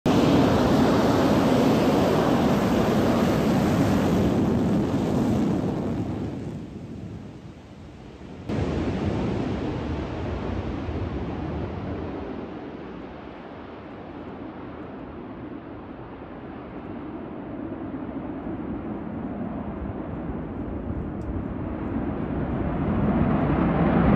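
Military fighter jet engine noise, a steady loud rush with no distinct tones. It fades after a few seconds, jumps back up abruptly at a cut, and then follows a jet taking off and climbing away: it fades to its quietest in the middle and swells again near the end.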